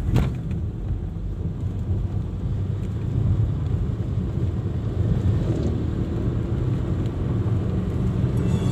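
Steady low rumble of a car driving, heard from inside the cabin, with one brief knock just after the start.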